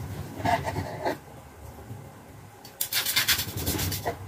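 Chef's knife sawing through a seared pork tenderloin and scraping the wooden cutting board beneath. A few separate strokes come in the first second, then a quick run of back-and-forth strokes near the end, the loudest part.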